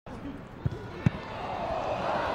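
Two sharp thumps of a soccer ball being kicked, about half a second apart, with voices on the field in the background getting louder near the end.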